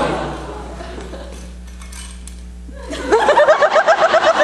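Audience laughter dying away, a quieter stretch, then a sudden loud burst of rapid, high-pitched laughter about three seconds in.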